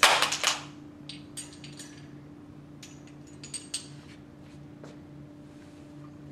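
Small metal slotted lab masses clinking together as they are handled and put on a spring's mass hanger: a quick cluster of loud clinks at the start, then a few lighter clicks, over a steady low room hum.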